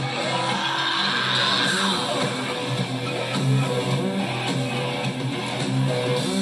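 Live rock band playing an instrumental passage: electric guitars strumming over bass and drums, with no singing.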